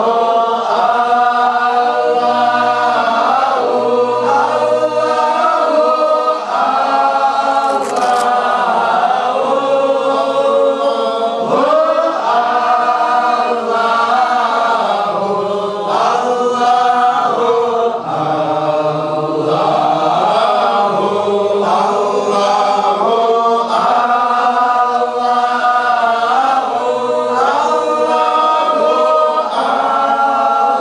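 A group of men chanting Qadiri dhikr together in unison, an unbroken sung recitation whose melody rises and falls.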